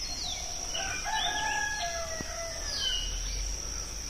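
A rooster crowing once, a drawn-out call of about a second and a half starting about a second in, over a steady high-pitched insect drone, with a short bird chirp near the end.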